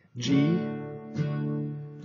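Acoustic guitar strummed with a pick: two chords about a second apart, each left ringing.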